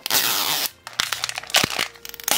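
Printed plastic wrapper being torn and peeled off a Mini Brands Books capsule ball: a loud ripping tear in the first half-second or so, then softer crinkling with a sharp click about a second in.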